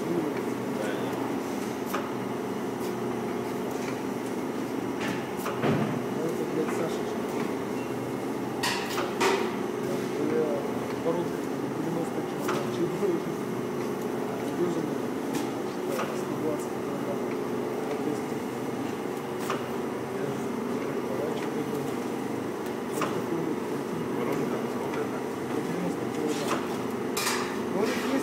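Daub Slim vacuum dough divider running: a steady hum from its vacuum pump and drive, with a knock every few seconds as the measuring pocket shifts and ejects a dough piece.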